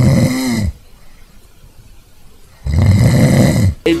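A person snoring loudly: two long snores about three seconds apart.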